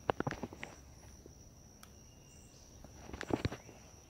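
Footsteps on forest-floor litter in two short spells, at the start and again about three seconds in, over a steady high-pitched insect call.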